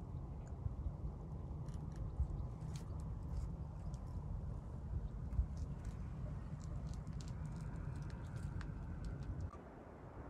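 Outdoor ambience: an uneven low rumble of wind on the microphone, with scattered faint clicks and crackles; the rumble drops away shortly before the end.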